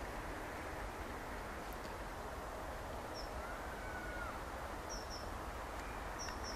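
Quiet outdoor ambience: a steady low background hiss and rumble, with a few faint, short, high bird chirps, some in quick pairs, and one thin whistle that rises and then falls about halfway through.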